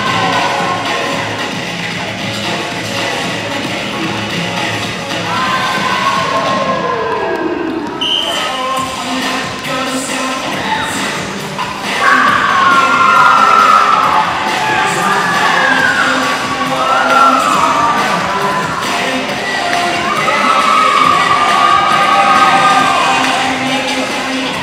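Dance music with vocals playing over a loudspeaker in a gymnasium, with a crowd of children cheering and shouting over it; the music grows louder about halfway through.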